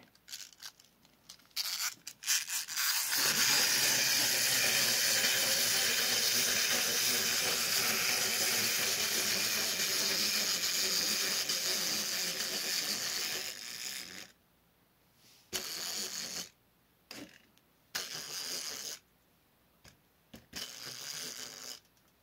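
Two small plastic wind-up walking toys running together, their clockwork mechanisms giving a steady buzzing whir as they walk across a tabletop, after a few clicks as they are wound and set down. The whir runs about eleven seconds and then stops suddenly as the springs run out, with a few shorter bursts of sound after it.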